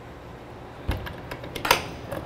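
A hinged diamond-plate metal compartment door on a fire engine being swung shut and latched: a low thump about a second in, then sharp metal clicks near the end.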